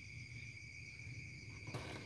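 Faint steady chirring of crickets, with a low hum underneath. A soft handling noise comes in near the end.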